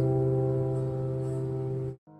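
Steel-string acoustic guitar's final chord ringing out and slowly fading, cut off abruptly just before the end.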